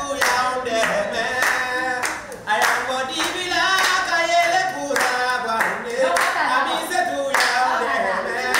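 A small group of young people singing together while clapping their hands in a steady rhythm.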